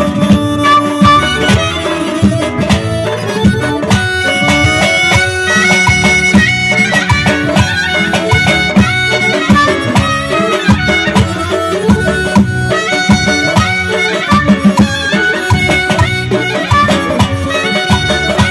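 Live traditional Azerbaijani music: a clarinet playing an ornamented melody over accordion and a steady drum beat.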